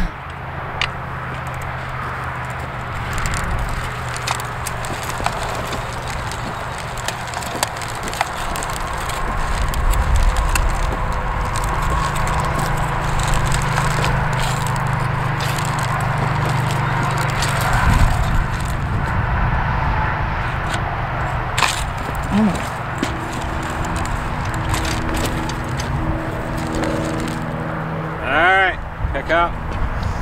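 Small one-row push corn planter rolling over hard, lumpy soil, with scattered clicks and knocks from its wheels and seed mechanism, over a steady low hum.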